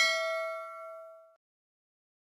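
A bell-chime ding sound effect of a notification bell being clicked, with several ringing tones that fade away about a second and a half in.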